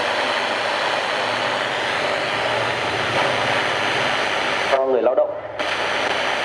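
FM inter-station static hissing from a National RX-F3 radio cassette recorder as its dial is tuned between stations. Near the end it briefly catches a broadcast voice, then goes back to static.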